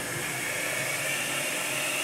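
Dampf Drache dry-steam cleaner blowing steam through a foam-rubber drain attachment sealed onto a sink outlet to clear a clogged siphon: a steady hiss with a faint high whistle.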